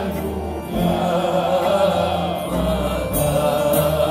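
Live Greek song performance: voices singing a sustained, chant-like line over an ensemble of guitar and plucked string instruments.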